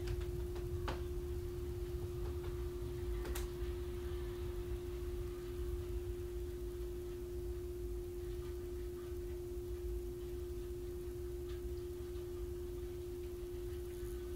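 A steady single-pitched hum that never changes, over a low background rumble, with a couple of faint clicks.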